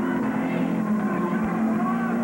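Rock music playing steadily, with held low notes.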